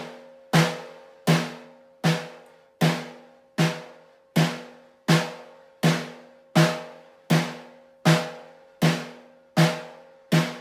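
Snare drum struck with a stick in single taiko 'don' strokes at a steady pulse, about one hit every three-quarters of a second, each ringing and fading before the next.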